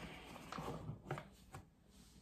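Faint kitchen handling sounds while pickling lime is measured on a scale: a soft scrape, then a few light taps and clicks around the middle, fading out near the end.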